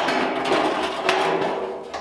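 Sheet-metal door skin clanking and scraping against the door's inner structure as it is worked onto the top edge, with a few knocks that each ring briefly.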